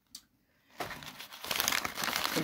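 Paper wrapping crinkling and rustling as it is pulled open by hand, starting under a second in and growing louder.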